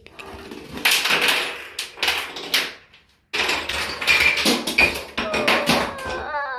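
Wooden dominoes toppling in chains across a countertop, a rapid clattering run of clicks that starts about a second in, breaks off briefly around the middle, and starts again.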